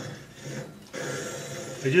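A bench grinder wheel turned slowly by hand with a radius hollowing cutter's bevel held against it in a sharpening fixture. The result is a faint, steady rubbing scrape that starts about a second in, as the bevel angle is checked before grinding. A man's voice is heard at the start and again at the very end.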